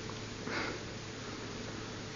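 Steady hiss and low hum of an old tape recording during a pause in conversation, with one short breathy sound about half a second in.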